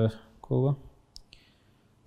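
A man's voice in short, broken utterances, followed by two faint sharp clicks about a second in.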